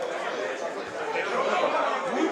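Overlapping shouts and chatter of players and spectators at a football ground, growing louder about a second in as the ball comes into the penalty area.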